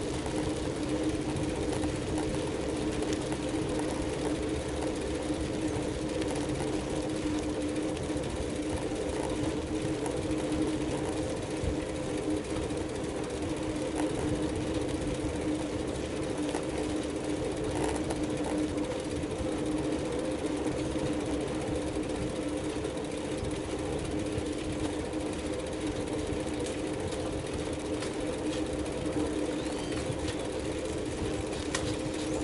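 Wind and tyre noise from a bicycle rolling along an asphalt road, heard from a camera mounted on the bike, with a steady hum that does not change throughout.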